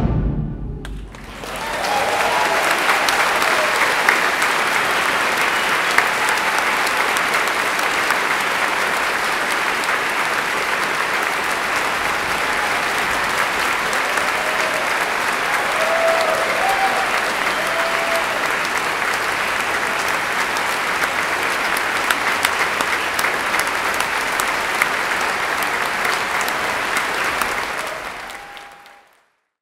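A large concert audience applauding steadily, the clapping swelling in about a second after the orchestra's final chord dies away.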